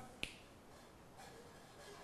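A single short, sharp click about a quarter second in, then near silence: faint room tone.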